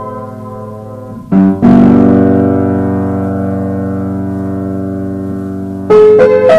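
Piano played slowly: a chord fading out, then a full low chord struck about a second and a half in and held, dying away gradually over about four seconds, with new notes struck right at the end.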